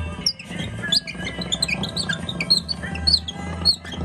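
Acoustic horn gramophone playing a shellac 78 record: an instrumental passage between sung lines of a French song, full of quick, high chirping notes that slide up and down like birdsong, over a steady low accompaniment.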